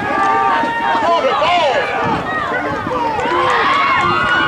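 Football crowd yelling and cheering during a play, many raised voices overlapping without a break.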